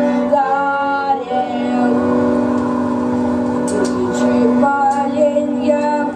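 Music with a woman's voice singing long, held notes.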